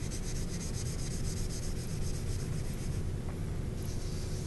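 Cotton pad rubbing pastel chalk onto paper in quick, repeated back-and-forth strokes, laying down a dark-to-light gradation, over a steady low background hum.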